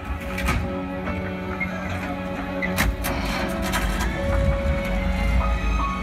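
Film soundtrack music played over open-air cinema loudspeakers, with steady held tones over a low rumble. A few sharp clicks come through, the clearest about halfway through.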